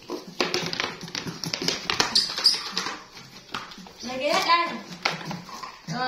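Young pet monkeys calling, with a run of light taps and scuffles in the first half and a rising cry about four seconds in.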